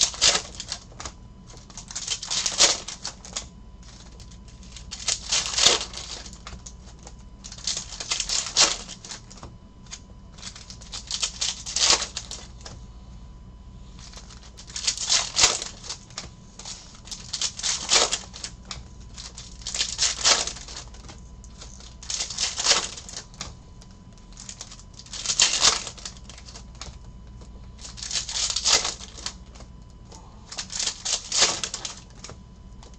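Plastic-foil trading-card pack wrappers crinkling and tearing, with card stacks rustling, as Topps Chrome packs are opened by hand. The crackling comes in short bursts every two to three seconds, about eleven in all.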